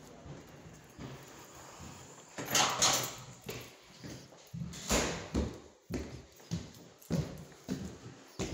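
Footsteps on a hard floor inside a building, with a louder knock about two and a half seconds in and another about five seconds in, then a run of short steps about two a second.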